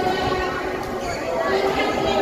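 Indistinct chatter of several people talking at once in a large indoor sports hall, no single voice clear.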